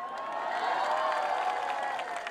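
Crowd cheering and clapping: many voices calling out together in a swell that builds and then fades.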